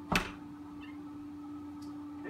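A single sharp knock on a wooden door, over a faint steady hum.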